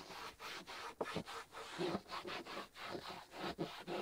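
A ceramic trim-coat wipe being scrubbed back and forth by hand over the faded, chalky textured black plastic of a utility-vehicle door panel. It makes a faint, quick rubbing sound in short repeated strokes.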